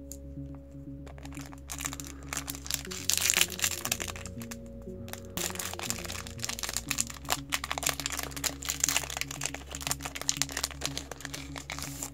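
The foil wrapper of a Yu-Gi-Oh! booster pack crinkling and crackling in the hands as it is opened. The dense crackling starts about a second in and runs on irregularly, over steady background music.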